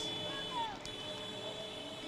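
A short pause in the commentary: faint steady background noise with a brief faint voice about half a second in.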